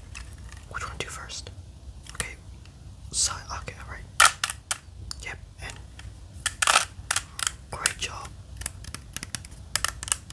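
A 3x3 Rubik's Cube being turned by hand, its plastic layers clicking and scraping in quick, irregular turns, with a few sharper clacks.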